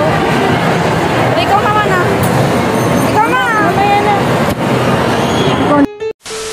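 Voices in short bursts of talk over a steady, loud din of crowd and mall background noise; the sound cuts off abruptly near the end.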